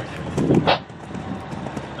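A horse landing over a fence and cantering on sand arena footing: hoofbeats, with one loud burst about half a second in.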